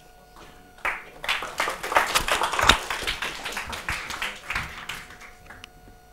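Audience applauding: many hands clapping start about a second in, build to a peak midway and die away shortly before the end.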